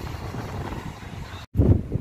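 Strong wind buffeting a phone's microphone, a rough low rumble. It cuts off abruptly about one and a half seconds in and comes back louder.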